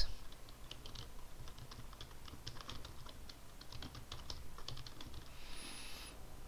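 Typing on a computer keyboard: a quick, irregular run of key clicks, with a brief soft hiss near the end.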